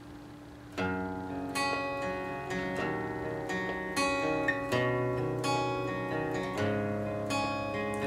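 Takamine acoustic guitar playing a slow intro, starting about a second in with ringing picked chords.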